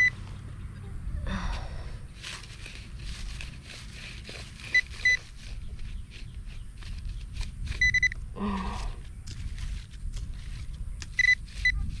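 Handheld pinpointer probe beeping with short, high-pitched beeps, singly or in pairs, several times, coming quicker near the end as it closes in on a small buried target, a corroded penny. Between the beeps the probe and glove scratch and click through dry grass and leaf litter.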